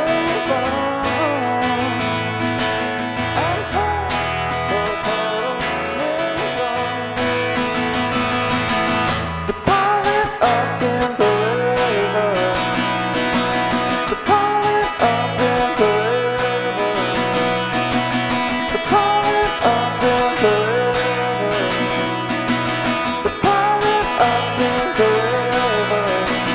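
Acoustic guitar strummed steadily in an instrumental passage of a song, with a deep bass part underneath and a melody line that slides in pitch above it.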